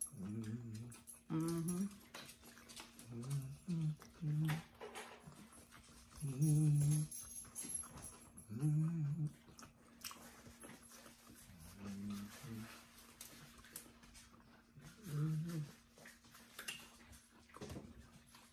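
A dog whimpering and whining in about ten short bursts spread through the stretch, likely begging while people eat.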